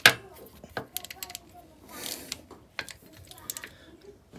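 A sharp knock, then scattered light metallic clicks and taps from a socket ratchet being handled.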